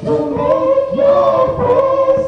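Live band music: voices holding long sung notes over bass guitar, with little drumming.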